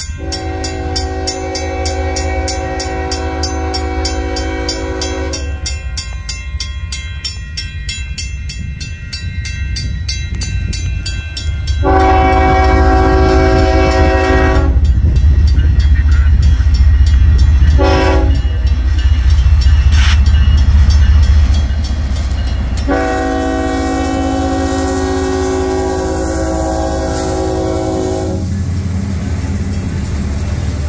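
Restrictor-less Nathan K5HL five-chime air horn on a diesel freight locomotive sounding the grade-crossing signal: long, long, short, long, louder as the train closes in. Under it run the diesel engines and the rolling train. Grade-crossing bells ring steadily through the first part.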